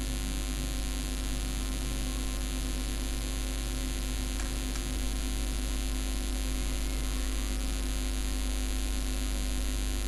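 Steady low electrical mains hum with a constant hiss underneath.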